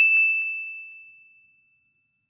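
A single bell-like ding sound effect: struck once with a clear high tone that fades away over about a second and a half.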